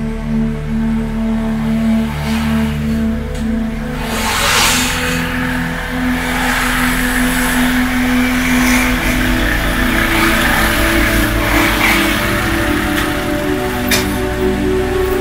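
Several small motorcycles ride up and pull in close, their engines growing louder from about four seconds in, over background music with long held notes.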